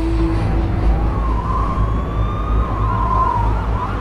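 A siren wailing, its pitch rising, holding and wavering, then falling, over a steady low rumble, as a break in the music.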